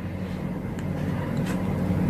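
A steady low hum that grows slightly louder through the pause.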